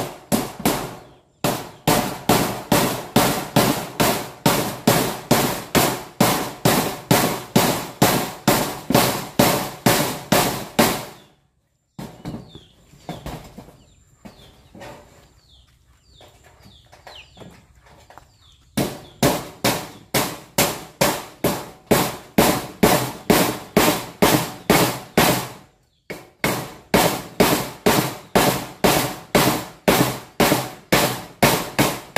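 A bolo (machete) blade striking wood over and over, about two blows a second, hacking at a wooden post or beam. The blows grow weaker and sparser for several seconds in the middle. They stop dead twice.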